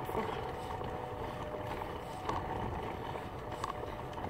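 Plastic wheels of a toy doll stroller rolling over asphalt: a steady rolling noise with a few faint clicks.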